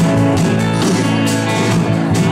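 Live rock band playing, with guitar to the fore over a steady drum beat; no singing in this stretch.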